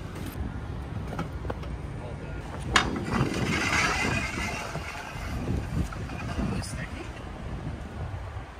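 A sharp knock about three seconds in, then a second or so of scraping, as a scooter is set on a steel stair handrail and slid along it, over steady outdoor traffic rumble.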